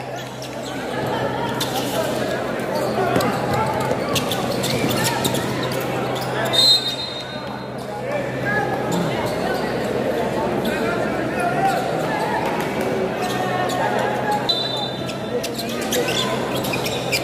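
Indoor basketball game in a large gym: a steady crowd din of voices, with the ball bouncing on the court and a couple of short, high squeaks. A steady low hum runs underneath.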